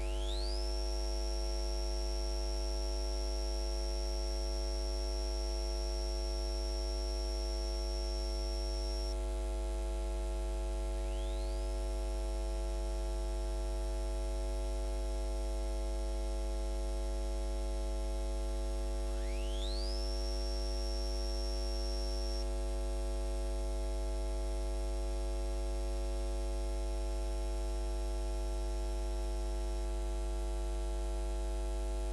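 Steady electrical mains hum with a stack of steady overtones. Three times a thin high whistle glides upward and holds for a few seconds before stopping.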